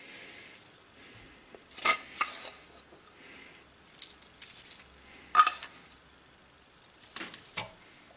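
A metal spoon scooping and pouring damp potting soil into a clay pot: soft rustle of falling soil with a few sharp metal clinks, the loudest about two seconds in and about five and a half seconds in, and two more near the end.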